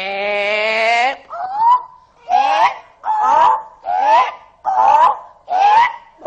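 A person's voice crying out a drawn-out 'é': one long held cry, then from about a second in a string of short squeals that each rise in pitch, roughly one a second, as part of a comic mock-surgery.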